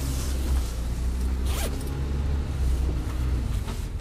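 Car engine running with a steady low rumble as the car pulls away, with a short sharp rasp about one and a half seconds in and another brief noise near the end.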